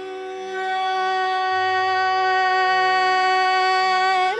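Carnatic classical music in raga Kalyani: a single note held steady without ornament for about four seconds, over a low drone, before the ornamented melody resumes just after.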